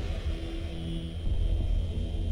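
Cinematic intro sound design: a deep steady rumble with held low tones, one fading out about a second in and a lower one starting shortly after.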